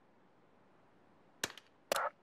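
Near silence, then two short, sharp clicks about half a second apart near the end.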